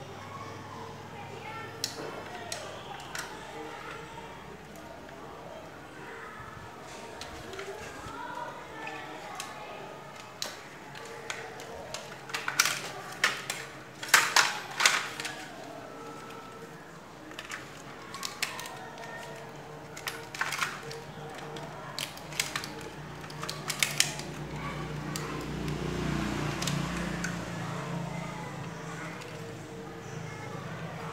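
Hard plastic parts of an air conditioner's indoor-unit louver and switch assembly being handled and pried apart by hand: scattered clicks and snaps, thickest and loudest about halfway through. A low rumble swells near the end.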